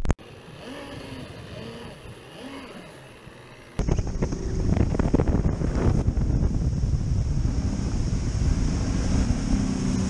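Bass boat's outboard motor running at speed, with wind buffeting the microphone and water rushing along the hull, starting with a sudden cut about four seconds in. Before that, a quieter stretch with a few faint rising-and-falling tones.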